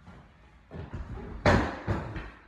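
A free-standing home dance pole gives way under a woman hanging on it and crashes to the floor with her. There is a loud crash about a second and a half in, and a second knock just after.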